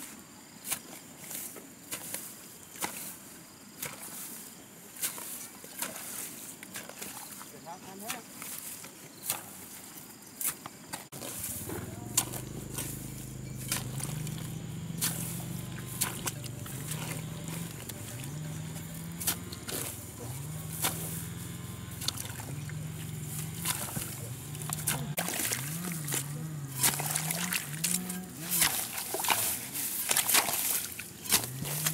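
Repeated strikes of a hoe chopping into wet, straw-covered soil, with some sloshing of muddy water. From about a third of the way in, a low, wavering voice-like sound joins and carries on underneath.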